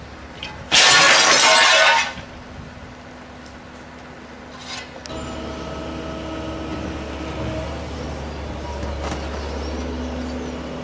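A loud burst of hissing noise lasting just over a second, starting and stopping abruptly, then from about halfway a steady heavy engine running.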